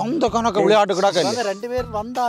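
Speech: men talking.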